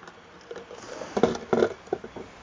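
A few short, irregular rustles and clicks from hands handling small objects, most of them in the second half.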